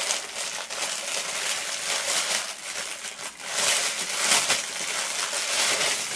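A package of necklaces crinkling and rustling as it is handled, loudest a little past the middle.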